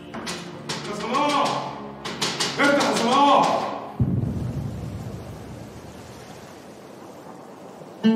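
A person's voice calling out twice, each call rising and then falling in pitch. About halfway through, a sudden low rumble starts and slowly fades away.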